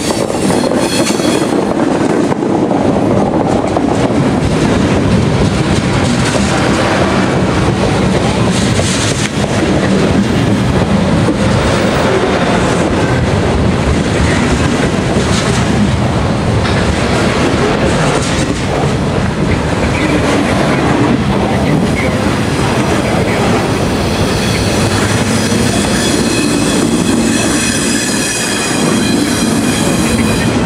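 Loaded refrigerated boxcars of a freight train rolling past at close range: a steady, loud rolling rumble with wheel clatter over the rail joints, and a high squeal rising out of it near the end.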